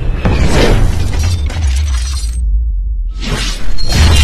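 Cinematic trailer sound effects over a heavy low rumble: a shattering impact about half a second in, then the high end drops away for under a second past the middle before a rising whoosh builds into another loud hit at the end.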